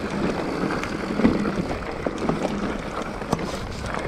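Mountain bike rolling over rocky, gravelly singletrack, the tyres crunching and the bike rattling, with scattered sharp knocks as it hits rocks. Wind noise on the microphone.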